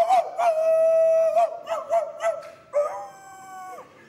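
A man imitating a dog, howling in long drawn-out wails: one long howl that wavers near the end, then a second shorter howl a little before three seconds in that drops in pitch as it ends.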